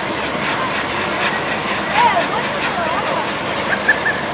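A pole-mounted firework fountain burning with a steady hiss and dense crackle of sparks, with a louder pop about two seconds in and another near the end.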